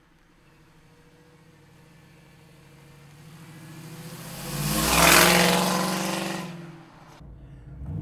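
1968 Camaro's 5.3L LS V8 through its dual exhaust, driving toward and past the camera: it grows steadily louder to a peak about five seconds in, then fades as the car goes by. Near the end it switches abruptly to a steadier, lower engine sound from inside the car.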